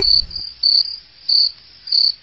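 Cricket chirping sound effect: short, high chirps repeating about every half second between lines of dialogue, the stock comedy cue for an awkward silence.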